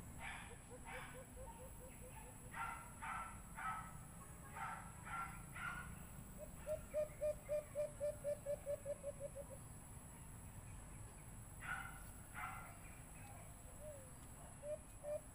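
White-eared brown dove calling: fast runs of short, low hooting notes about five a second, loudest in a run of some fifteen notes about halfway through, with fainter runs at the start. Between the runs come short, higher calls from another bird, in twos and threes.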